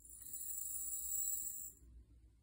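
Hodgdon H4831SC extruded rifle powder poured from a scale pan through a metal powder funnel into a brass 6.8 Western case: a steady high hiss of grains trickling for nearly two seconds, stopping shortly before the end.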